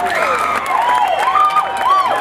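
Audience of many voices cheering and talking at once, with a few scattered claps.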